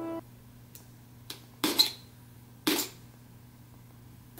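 Packaging being handled: two short, sharp ripping sounds, about a second apart, of tape being pulled off a box, after a couple of faint clicks.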